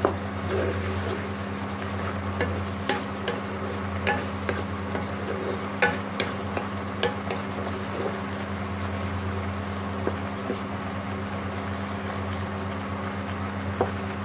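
A wooden spatula stirring and scraping a thick curry of stink beans and shrimp around a nonstick wok, with scattered sharp taps of the spatula on the pan and the wet sauce sizzling gently. A steady low hum runs underneath.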